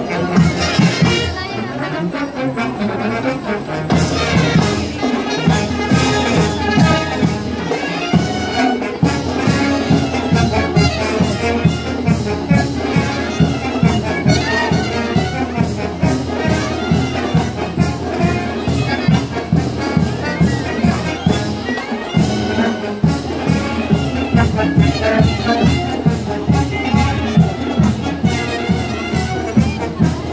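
Marching band playing: brass carrying the melody, with drums coming in about four seconds in to keep a steady march beat, which drops out briefly later on.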